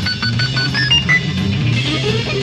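Live progressive rock band playing an improvised jam: a moving bass guitar line under guitar and drums, with short repeated high notes above.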